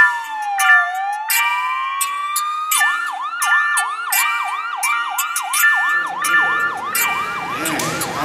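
Music soundtrack with a siren effect over held synth chords and sharp percussive hits. A slow wailing siren falls and rises, then switches to a fast yelp of about three glides a second from about three seconds in.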